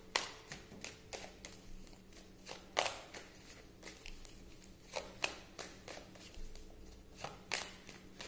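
A deck of tarot cards being shuffled by hand: an irregular run of soft card clicks and slaps, with a few sharper snaps standing out.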